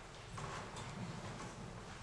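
Faint, irregular knocks on a hard floor, like footsteps, over low room hum.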